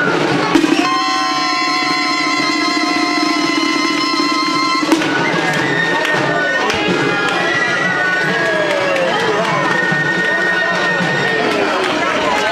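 Traditional reed-pipe music over a steady drone, with a wavering held note, cutting off abruptly about five seconds in. Then a crowd of people talking, with a held high tone above the voices.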